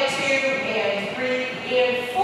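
A woman's voice counting out dance steps in held, sing-song counts.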